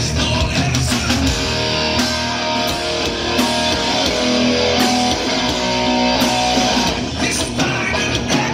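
A live hard rock band, with electric guitar, bass guitar and drum kit, playing loud; from about two seconds in to about seven seconds, sustained guitar notes come forward and the cymbals ease off in an instrumental stretch.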